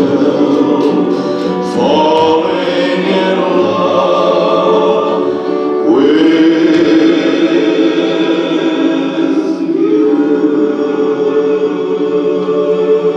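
Recorded music of a choir singing long held chords, the chord changing about every four seconds with each new one sliding up into place.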